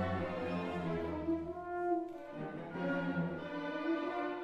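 Symphony orchestra playing held, sustained chords. The sound thins briefly about halfway through, then fills out again.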